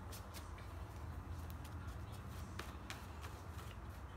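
Tarot cards being handled and shuffled by hand, scattered soft clicks and taps, over the steady low hum of a running fan.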